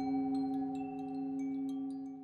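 Tibetan singing bowl ringing on in a steady, sustained hum of a few low tones, with wind chimes tinkling in quick, scattered high strikes above it; the sound slowly fades.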